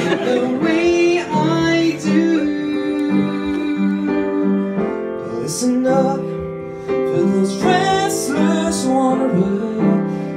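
Male voices singing a show tune over piano accompaniment.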